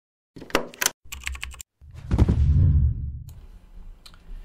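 Intro sound effects: two short runs of sharp clicks in the first second and a half, then a loud deep thud about two seconds in that fades away and cuts off suddenly.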